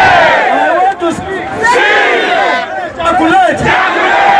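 Loud crowd of protesters shouting together, many voices overlapping, dipping briefly about one second and three seconds in.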